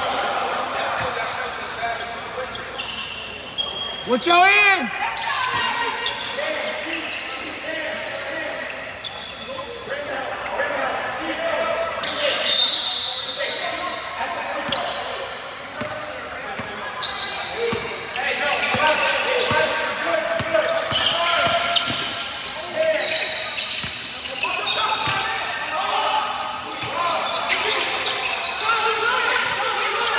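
A basketball bouncing on the hardwood floor of an echoing gym, among the voices of players and onlookers, with a short squeal about four seconds in.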